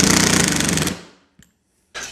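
Cordless Milwaukee impact driver rapidly hammering a 3/4-inch screw into half-inch plywood. It stops about a second in as the screw seats.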